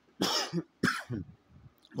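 A man coughing twice, about half a second apart.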